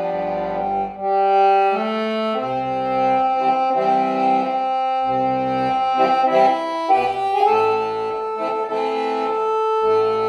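Solo piano accordion playing a tune: held melody notes and chords that change every second or so, with low bass notes coming and going underneath.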